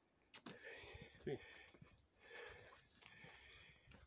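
Near silence, with a faint voice briefly answering "sí" a little over a second in and a little soft murmuring around it.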